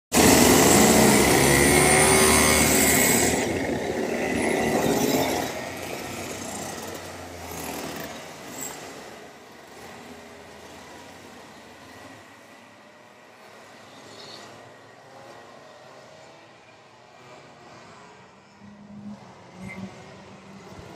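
Two-stroke racing kart engines, loud with changing pitch for about five seconds, then dropping away and fading to a quieter drone.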